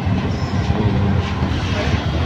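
Auto rickshaw running through traffic, heard from inside its open-sided cabin: a steady low rumble of engine and road noise.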